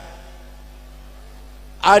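Steady low electrical mains hum from the microphone and sound system during a pause in the talk. A man's voice comes back in near the end.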